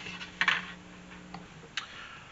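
A short scrape and a few light ticks of a plastic blaster shell being handled, over a steady low hum that stops about a second and a half in.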